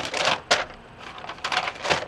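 Protective netting being pulled off a synthetic wig: several short bursts of crackling rustle.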